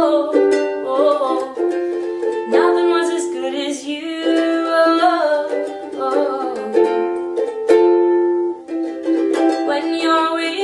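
Background music: a slow ukulele piece, plucked and strummed, with notes ringing on between the strokes.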